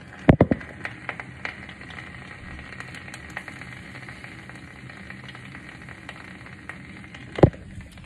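An egg frying in a black frying pan, a steady sizzle with scattered small crackles. A few sharp knocks come just after the start, and one louder knock comes near the end.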